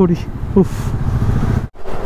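Motorcycle riding noise: the KTM 390 Adventure's single-cylinder engine running, with wind on the microphone, a steady low rumble. It cuts off suddenly near the end.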